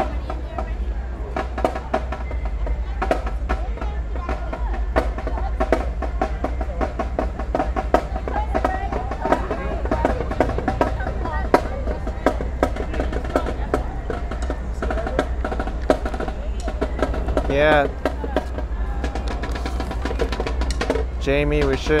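Drumline drums playing a fast, busy pattern of snare hits, with voices talking over it.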